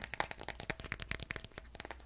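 Fingernails tapping quickly on a smartphone held in both hands: a fast, irregular run of light clicks.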